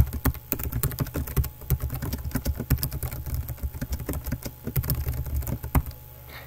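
Typing on a computer keyboard: a dense run of key clicks entering a line of code, stopping shortly before the end. A low steady hum sits underneath.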